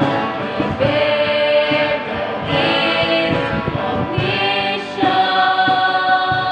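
A small group of young women and men singing a Christian worship song together, holding long notes that change pitch every second or so.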